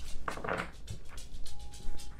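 Tarot deck being shuffled by hand: a run of quick, light papery flicks and taps of cards against each other. Soft background music runs underneath, with a held note coming in near the end.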